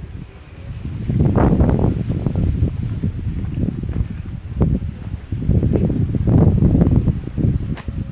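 Wind buffeting the microphone: a loud, rough low rumble coming in gusts, swelling about a second in and again in the second half.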